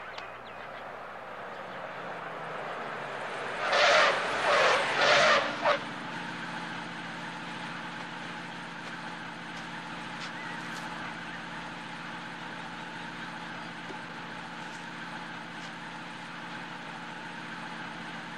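Box truck's engine running as it drives up, with three or four loud, harsh bursts about four to five seconds in, then the engine idling steadily.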